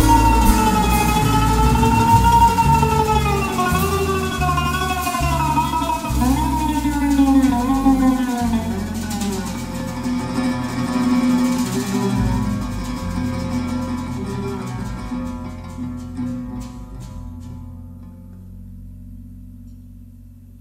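Oud and plucked double bass playing live, with a sustained melody line sliding up and down in pitch above them. The music grows steadily quieter in the second half, thinning to soft low notes near the end.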